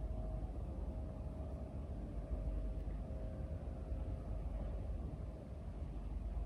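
A steady low rumble with a faint, even hum above it.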